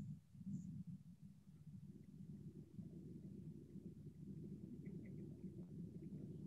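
Faint, steady low rumbling noise with no speech.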